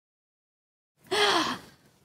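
Dead silence for about a second, then a woman's single heavy sigh lasting about half a second, falling in pitch: a sigh of worry.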